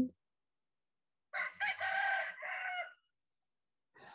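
A rooster crowing once, a cock-a-doodle-doo in three parts lasting about a second and a half, starting just over a second in.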